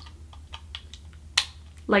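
Small clicks and taps of the Moonstick Proplica toy replica being handled as a crystal piece is fitted into it, with one sharper click a little past halfway.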